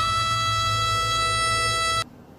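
A male singer holding one high, dead-steady note without vibrato over the song's backing, cutting off abruptly at the end.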